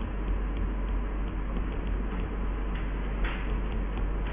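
Faint, irregular clicks and brief scratches of a stylus writing on a tablet screen, over a steady low electrical hum.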